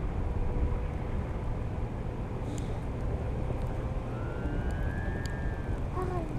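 Wind rushing over the camera microphone during a tandem paraglider flight, a steady low rumble. A faint thin high tone rises slightly over the last two seconds.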